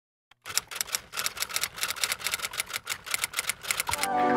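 Typewriter keys clacking rapidly, a typing sound effect of about ten keystrokes a second, starting about half a second in after a brief silence.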